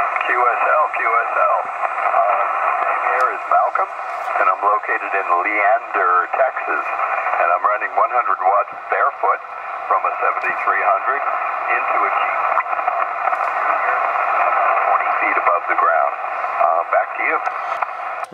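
A distant amateur radio operator's voice coming in over the air through an HF transceiver's speaker: thin, narrow-band speech riding on a steady bed of static hiss, as the other station replies with its report.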